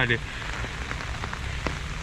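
Heavy rain falling steadily, with scattered sharp ticks of drops striking the umbrella overhead.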